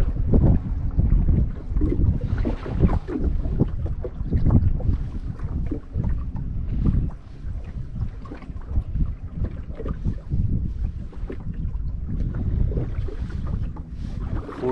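Wind buffeting the microphone in gusts: a heavy low rumble that rises and falls.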